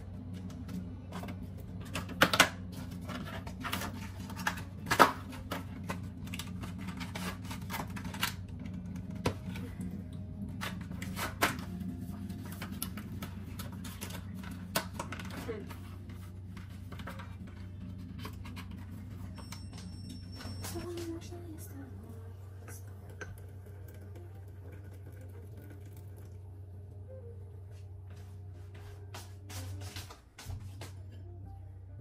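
Kitchen handling sounds: a scatter of sharp clinks and taps of crockery and a glass being set down on a countertop, loudest in the first half, over a steady low hum.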